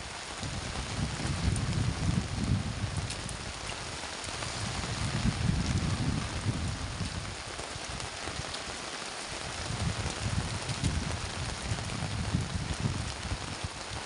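Rain falling on the open sea and a small bamboo outrigger boat, a steady hiss, with a low rumble that swells and fades every few seconds.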